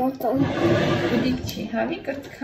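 Voices at a family table: a short pitched voice sound at the start, then a loud, breathy vocal sound lasting about a second, with more pitched voice near the end.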